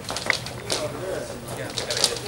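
Indistinct voices of a group of people in a room, softer between bursts of chanting, with a few short sharp clicks.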